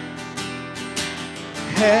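Live worship band playing a short instrumental stretch between sung lines: acoustic guitar strumming over sustained keyboard chords and drums, with the singers coming back in near the end.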